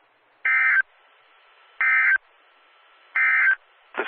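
NOAA Weather Radio EAS (SAME) digital data burst sent three times: three short, harsh buzzing bursts, each about a third of a second long and a little over a second apart. They are this short, which fits the end-of-message code rather than a full alert header.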